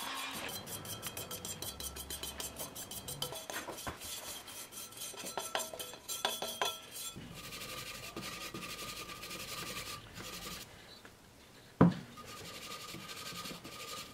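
Wire brush scrubbing soot build-up out of the metal burn chamber of a Planar 44D-12 diesel heater, in quick, irregular scraping strokes. There is a lull, then a single sharp knock near the end.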